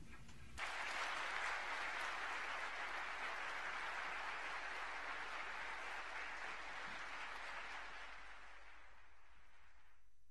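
Large audience applauding: the clapping starts suddenly about half a second in, holds steady, then dies away near the end.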